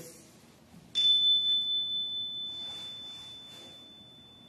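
A small chime struck once about a second in, giving a single high, pure tone that rings on and slowly fades.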